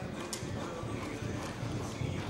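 Hoofbeats of a reining horse loping on the soft dirt footing of an indoor arena, a run of dull low thuds.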